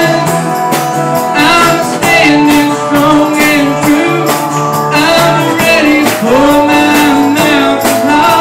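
Live gospel-country band: a man singing with an acoustic guitar over a drum kit, in a steady beat, with long held sung notes.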